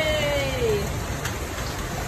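A high voice gives a falling whoop in the first second. A steady hiss follows, with one faint click about a second and a quarter in.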